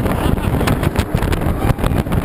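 Roller coaster ride at speed through its inversions: wind buffeting the camera microphone over the roar of the train on the track, with a few sharp knocks about midway.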